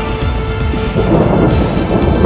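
Background music, with a low rumble of thunder swelling up from about a second in.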